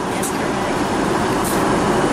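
Steady in-flight cabin noise of an Airbus A380, a constant even rush of airflow and engine sound heard from inside the cabin.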